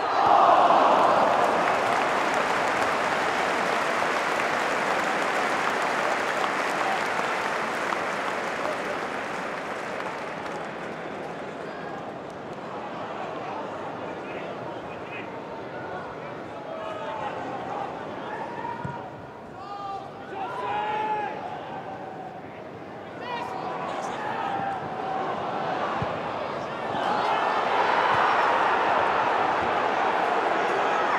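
Football stadium crowd: a loud roar right at the start that slowly fades over about ten seconds, then a lower murmur with scattered individual shouts. The noise swells again near the end as a goal is celebrated.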